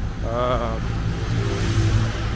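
A car's engine running on the street close by, its low hum and tyre hiss growing louder near the end as it passes. A short vocal sound comes about half a second in.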